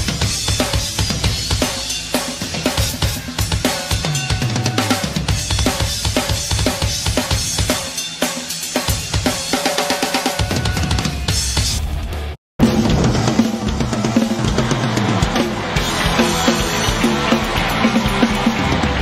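Isolated live heavy-metal drum kit track: dense bass drum, snare and cymbal playing. It drops out briefly about twelve seconds in and comes back with a different song.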